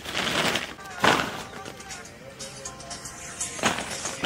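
Soil clods being handled and a woven plastic sack rustling as earth is loaded into it, in three short scratchy bursts, the loudest about a second in.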